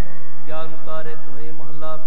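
Sikh kirtan: a man singing a gurbani hymn over a steadily sounding harmonium. The voice pauses briefly at the start and comes back in about half a second in with a wavering, ornamented line.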